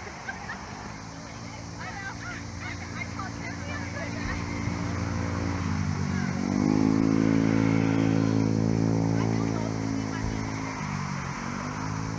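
A motor engine running, growing louder toward the middle. Its pitch dips and climbs back about six seconds in, and again near the end.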